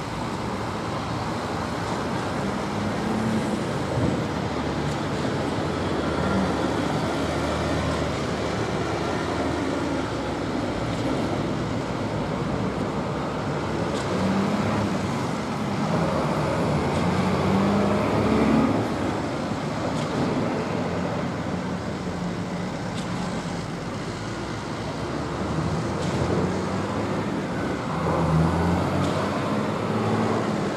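Diesel engines of truck-mounted concrete pumps running during a pour, a steady mechanical drone whose engine note rises and falls every few seconds.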